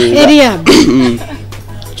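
A person's voice over a low steady music bed.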